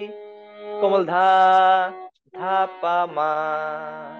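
A man sings held, slow notes of a Bengali song phrase over a harmonium's steady reed tone. A held note fades over the first second, then two sung phrases follow with a brief break between them.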